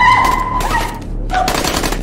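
A run of gunshots in quick succession, with a woman screaming over the first part.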